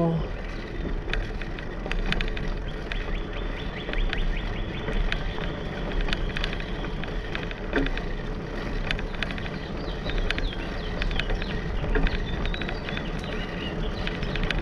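Bicycle riding along a paved path: steady wind rumble on the camera microphone and rolling tyre noise, with frequent light clicks and rattles throughout.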